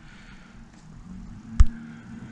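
A single sharp computer mouse click about one and a half seconds in, over quiet room tone with a faint steady low hum.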